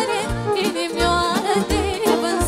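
Live Romanian folk party music: a woman singing an ornamented melody with vibrato into a microphone, backed by violin and electronic keyboard with a steady bass beat.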